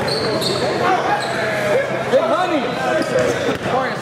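A basketball bouncing on a hardwood gym court while sneakers squeak in short, curving chirps, in an echoing hall.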